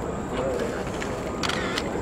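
Camera shutters clicking at irregular moments, with two quick clicks about one and a half seconds in, over low chatter from a crowd of people.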